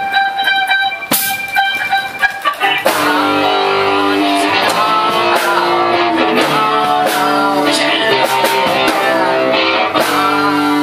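Rock band playing live with electric guitars in an instrumental passage between sung lines. For the first three seconds it is sparse, a held note with a few sharp hits, and then the full band comes in and plays steadily.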